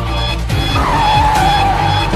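Background music with a car tyre-screech sound effect laid over it, coming in under a second in: one high squeal that drops a little in pitch and holds on.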